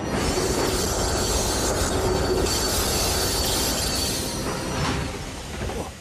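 Railway wagons rolling and clattering on the track, a loud dense rush of noise that dies away about five seconds in.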